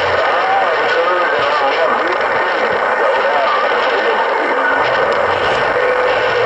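Steady, loud static hiss from a Uniden HR2510 transceiver's speaker while it receives on 27.085 MHz (CB channel 11), with faint, garbled voices from distant stations wavering through the noise.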